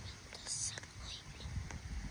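A child whispering, with a few short hissing sounds, over a low rumble of wind on the phone's microphone.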